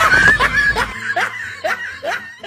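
High-pitched laughter: a drawn-out high voice at first, then about a second in a string of short falling laughs, roughly two a second.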